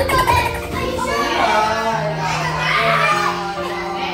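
A group of young children's voices calling out and shouting over each other, over background music with steady held notes.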